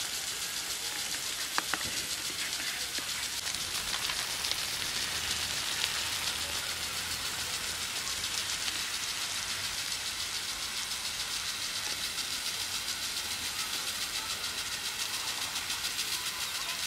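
Water spraying from irrigation sprinklers over a groundnut field: a steady hiss. A single sharp click comes about a second and a half in.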